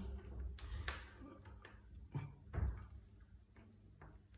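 Light irregular clicks and handling knocks of a plastic handlebar phone mount and its screw being fitted by hand, with a couple of duller bumps a little after two seconds in.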